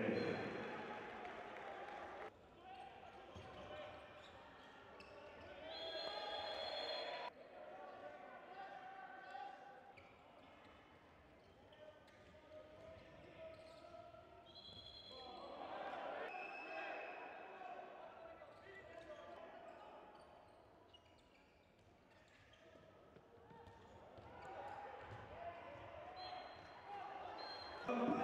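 Game sound from an indoor handball match: a ball bouncing on the court and players' and spectators' voices echoing in a sports hall. A few short, high steady whistle tones come about six seconds in, midway and near the end, typical of the referee's whistle.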